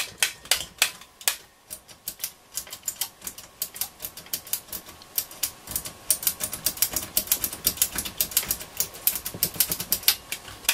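Push-button switches on a Hacker Super Sovereign RP75 transistor radio being pressed over and over, clicking, working in the squirt of lubricant just given to them. The clicks are scattered at first and come quickly, several a second, from about halfway through.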